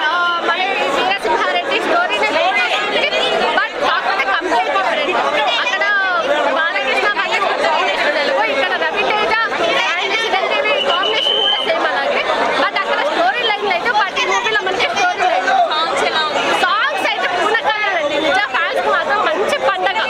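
A woman talking continuously into a microphone, with other people chattering in the background.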